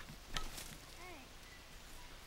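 A sharp knock near the start, then about a second in a single short, high call that rises and falls.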